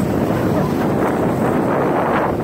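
Wind buffeting the camera microphone, a steady rumbling noise, over ocean surf washing in the shallows.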